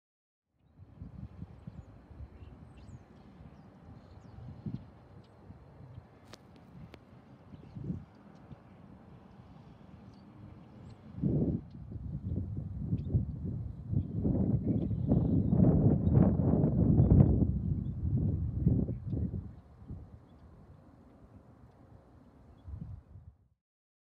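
Wind buffeting an outdoor microphone: an uneven low rumble that swells to its loudest in the middle and dies down again near the end.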